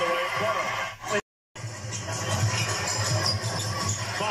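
Audio of a TV basketball broadcast: a commentator's voice over steady game-and-arena background noise. It drops out completely for a moment just after a second in, where one highlight clip is cut to the next.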